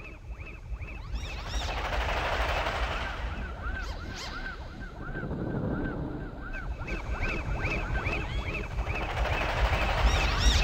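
Intro of an electronic dance track: short synth zaps that rise and fall in pitch, repeating a few times a second over a deep bass pulse, with a noise swell about two seconds in and the whole building in loudness.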